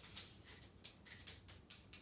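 Small dog moving about on a hardwood floor: a quick, irregular run of faint, light clicks, like claws or collar tags.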